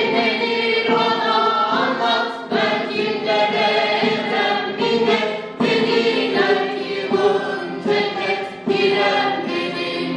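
A group of young men and women singing a Turkish folk song together, in phrases with short breaths between them.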